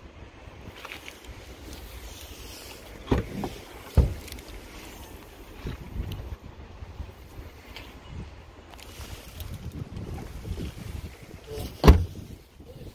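Wind buffeting the microphone, with two short knocks about three and four seconds in as the car's tailgate is opened, and one loud slam near the end as the tailgate is shut.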